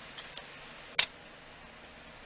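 A single sharp click about a second in, as a long steel clay blade is set down on the tabletop, with a couple of faint ticks before it.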